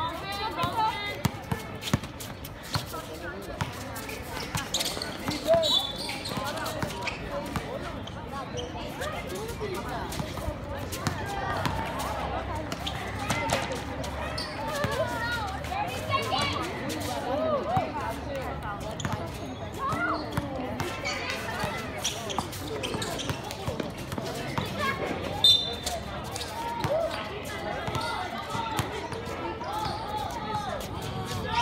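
A basketball bouncing on a hard outdoor court during play, with scattered knocks and two sharper impacts, about five seconds in and again near 25 seconds. Players and spectators call out over it.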